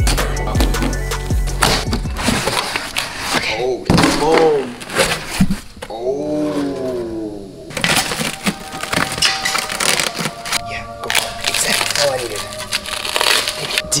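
Plastic wrap crinkling and tearing as a new wheel is unwrapped in its cardboard box, with many short crackles. Drawn-out voices sliding up and down in pitch come through around the middle, over background music.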